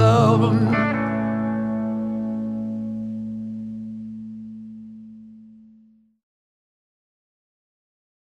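The closing chord of a rock song on electric guitar and bass, struck about a second in and left to ring, fading away to nothing about six seconds in.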